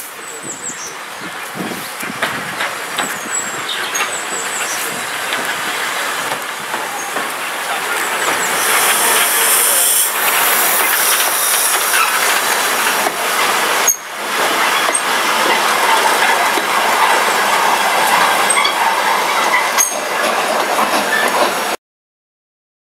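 Small steam tank locomotive coming into the station and its wooden-bodied coaches rolling past, growing steadily louder, with the clicks of wheels over rail joints and a hiss of steam about eight to ten seconds in. The sound cuts off suddenly near the end.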